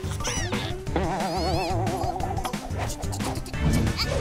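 Cartoon soundtrack: background music with a steady beat, overlaid by sound effects: quick whistling swoops, and a warbling, wobbling tone that starts about a second in and lasts about a second and a half.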